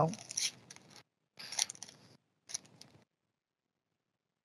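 Paper pack wrapper being torn open and crinkled by hand in three short, faint rustles.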